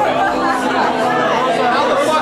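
Many people talking at once: loud, continuous overlapping chatter of a party crowd, with no single voice standing out.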